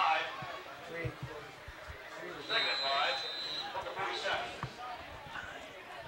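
Voices shouting from the sideline and stands at a football game, with a single steady whistle blast about two and a half seconds in lasting about a second. A few short low thumps are scattered through it.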